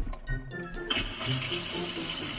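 Water turned on at a newly installed sink faucet, starting about a second in and running as a steady hiss, during a test for leaks at the handle connection. Background music plays under it.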